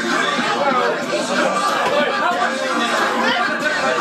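Several people's voices chattering and talking over one another.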